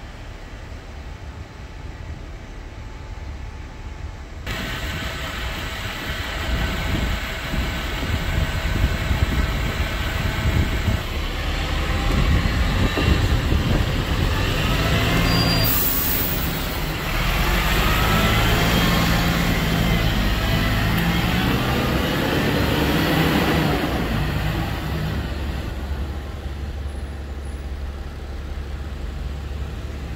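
Double-decker bus's diesel engine running, then pulling away and passing close, getting louder with a rising whine as it accelerates. A short hiss comes about halfway through, and the sound fades over the last few seconds as the bus leaves.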